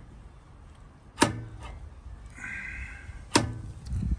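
Steel driveshaft being slid in and out of the rear hub's splines by hand, knocking twice at the end of its travel about two seconds apart, with a brief scrape between the knocks. The knocks come from about two centimetres of in-and-out play in the fitted axle.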